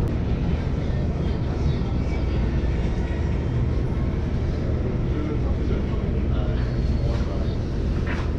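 Passenger train heard from inside the carriage as it runs into a station: a steady low rumble of the running gear and wheels on the rails.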